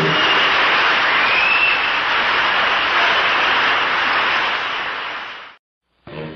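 Audience applause at the end of a live song, a dense steady clapping that fades and then stops abruptly about half a second before the end.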